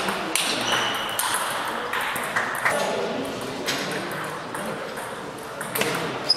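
Table tennis rally: the ball clicking sharply off bats and table at irregular intervals, with sports shoes squeaking briefly on the hall floor as the players move.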